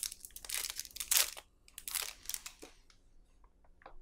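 Clear plastic sleeve crinkling as it is worked off a metal fountain pen, in several short rustling bursts, then a few small clicks near the end.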